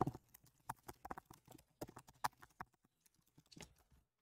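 Faint, irregular keystrokes on a computer keyboard, a dozen or so separate clicks, with a short pause about three seconds in.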